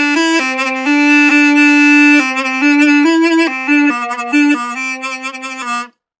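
A mey, the Turkish double-reed wind instrument, pitched in La, playing a lively phrase of short notes from the folk-tune melody. The phrase cuts off just before the end.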